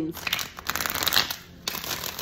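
A deck of tarot cards being shuffled by hand: a rapid, crisp patter of cards slapping together in two runs, the second one shorter and near the end.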